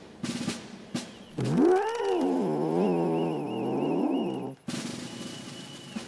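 A long, wavering animal-like cry, a yowl that swoops up and then rises and falls in pitch for about three seconds before cutting off sharply. It follows a second of drum-roll music.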